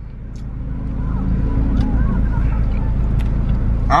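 Low rumble of a car's engine running, heard inside the cabin, growing louder over the first second or so and then holding steady, with faint voices under it.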